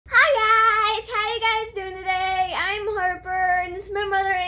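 A young girl singing a short tune in long held notes, with a swoop down in pitch about halfway through.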